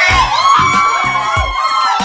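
A group of young people whooping and cheering as they arrive, many high voices overlapping, over background music with a steady bass beat.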